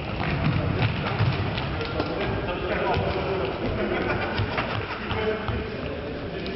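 Indoor futsal play: scattered thuds of the ball being kicked and of players' feet on the hall floor, mixed with players' voices calling.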